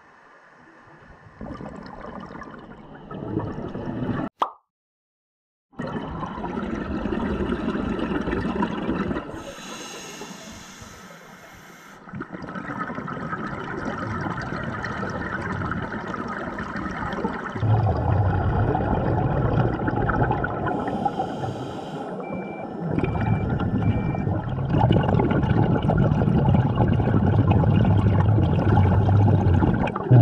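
Scuba diver breathing through a regulator underwater: gurgling, rushing exhaled bubbles that swell in bursts, with heavier breathing noise in the second half. The sound cuts out completely for about a second and a half, about four seconds in.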